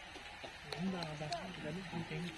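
A person's voice speaking, quieter than the talk around it, with a few faint ticks.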